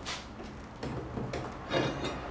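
A door's bracing bar being worked loose from its wall brackets: several short scrapes and rubs of the bar against the brackets and the wooden door, the loudest near the end.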